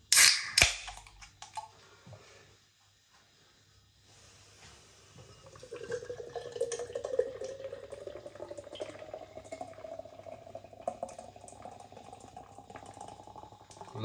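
A widget can of draught stout cracked open with two short loud hisses. About four seconds later the stout is poured into a pint glass, a steady glugging pour that rises in pitch as the glass fills.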